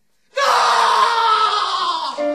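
A person's loud, long scream that breaks out suddenly about a third of a second in and slowly falls in pitch.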